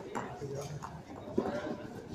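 Background voices of people talking, with a few short sharp knocks, the loudest about one and a half seconds in.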